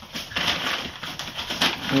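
Thin plastic bag rustling and crinkling as puppies tug and chew at it, with a few sharp clicks.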